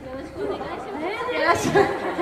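Overlapping chatter of several young women's voices through handheld microphones, louder in the second half.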